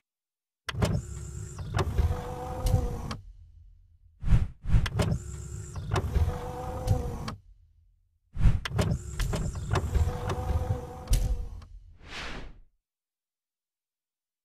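Sound effects for an animated logo: three separate motorised sliding sounds of about three seconds each, with a steady hum running through them, then a short whoosh near the end.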